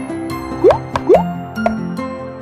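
Cartoon pop sound effects: two quick rising "bloop" sounds about half a second apart, over light children's background music.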